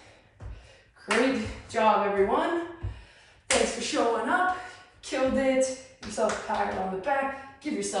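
A man speaking in short phrases with brief pauses between them.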